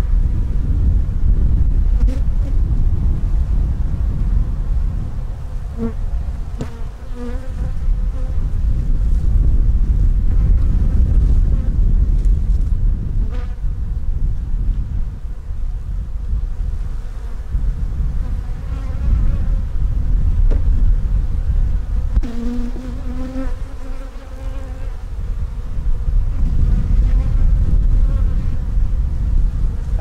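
Honeybees buzzing around an open hive as frames are lifted out, a dense steady drone with wavering tones from bees flying close by. Underneath there is a low rumble, and a few light knocks come from the frames being pried loose.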